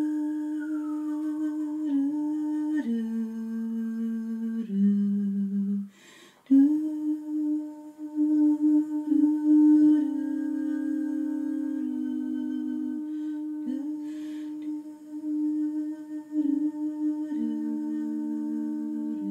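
A woman humming wordless, long held notes, with two or more pitches sounding together in close harmony and changing every few seconds. There is a brief break for breath about six seconds in.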